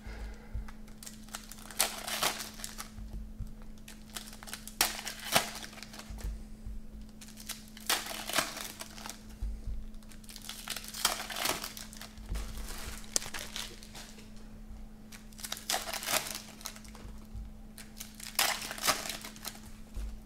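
Silvery foil trading-card pack wrappers crinkling and tearing as packs are opened, with the cards handled and sorted, in irregular bursts every second or two.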